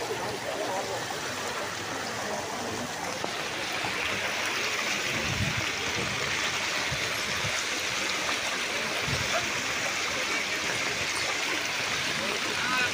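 Steady rush of floodwater running along a flooded street, growing louder and hissier about three and a half seconds in. Faint voices in the first second.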